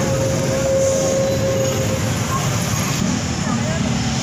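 Steady road-vehicle and traffic noise, a continuous low rumble with a thin steady whine that fades out about halfway through.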